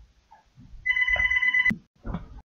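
A brief electronic ring or beep tone, held steady for just under a second and cut off by a sharp click.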